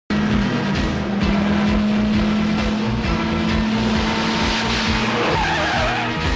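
Film soundtrack: music mixed with vehicle sound, and a jeep's tyres squealing briefly with a wavering pitch about five seconds in.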